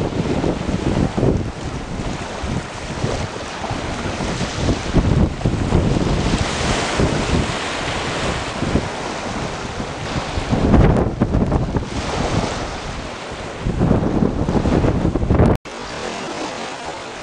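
Strong gusty wind buffeting the camcorder microphone, rising and falling, over surf breaking on a beach.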